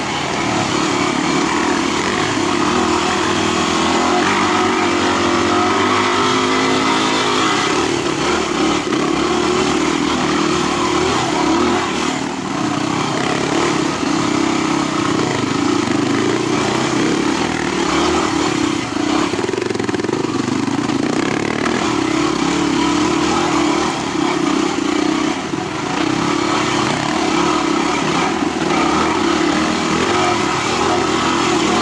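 Yamaha WR250R's 250 cc single-cylinder four-stroke engine running continuously at low revs on a trail ride, the revs rising and falling as the throttle is worked.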